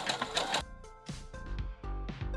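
A Baby Lock Jubilant sewing machine running a zigzag stitch for about half a second, then background music with plucked notes and a low bass takes over.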